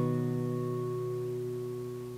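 A G-shape chord on a capoed acoustic guitar, sounding in the key of B, ringing out after a single strum and slowly fading.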